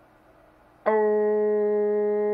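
A single steady, buzzy tone, rich in overtones, starts sharply just under a second in and holds one pitch without wavering. It is a test tone keyed through a tuned AM CB radio to drive its power-meter reading.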